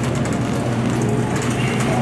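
Shopping cart rolling across a hard store floor, its wheels giving a steady rumbling rattle under a constant low hum.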